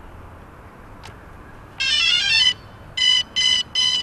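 Quadcopter drone powering on: a short rising electronic chime about two seconds in, then a run of evenly spaced beeps on one pitch, about three a second.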